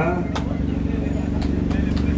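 A steady low mechanical rumble with a constant hum under it, broken by a few short clicks, in a pause between a man's words.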